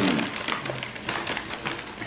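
Puffed snacks poured from a crinkly snack bag onto a paper plate: the bag rustles and many small light taps come as the puffs land. A faint low hum of a voice comes about halfway through.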